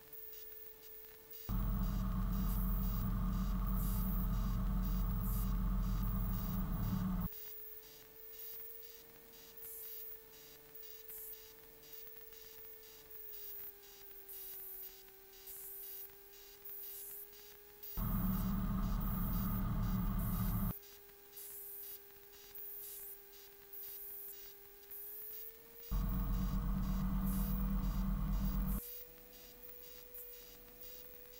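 Light-aircraft engine noise from a Van's RV-12 on final approach, heard through the cockpit audio feed: a steady tone that drops in pitch about a third of the way in as power comes back and rises again near the end. Three loud spells of fuller engine and cabin noise break in, about six, three and three seconds long.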